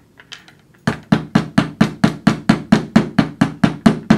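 Nylon hammer striking a sterling silver wire clasp on a bench block in quick, even blows, about four to five a second, starting about a second in. The rapid tapping work-hardens the wire without flattening it.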